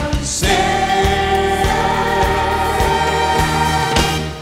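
A choir singing over instrumental music in a gospel style. Just before half a second in there is a brief break, then a long held chord runs through the rest.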